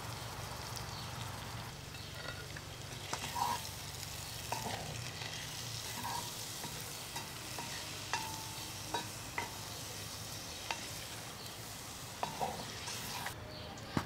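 Hash browns with diced onion and bell pepper sizzling in bacon and sausage grease in a small cast iron Dutch oven, with a wooden spoon scraping and knocking against the iron as they are stirred.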